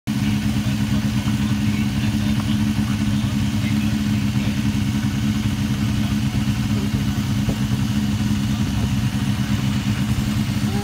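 Motorcycle engines idling steadily while stopped at a traffic light, a low, even engine note with no revving.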